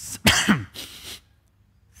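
A man clearing his throat close to a headset microphone: a few short, rough bursts in the first second or so.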